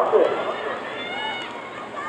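Voices calling out and talking across an athletics stadium, loudest at the very start and then fainter, over steady open-air background noise.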